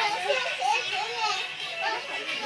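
Young children's high-pitched voices, chattering and calling out while they play.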